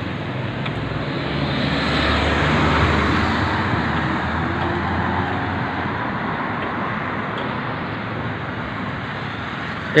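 Road traffic on a city street: a car goes by with a low rumble and tyre noise, growing louder to a peak about three seconds in and then slowly fading into the steady traffic hum.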